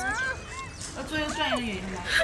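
A woman speaking and laughing, with short high whimper-like cries, one gliding down about a second and a half in.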